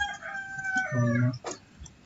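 A rooster crowing in the background: one long, drawn-out call that tails off downward just before the first second is out.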